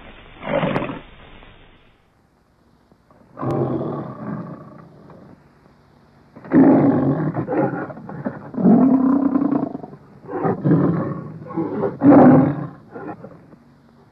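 Lion roaring on the old MGM trademark soundtrack: one short roar over film hiss, a brief silence, then a run of several loud roars and grunts, the strongest near the end.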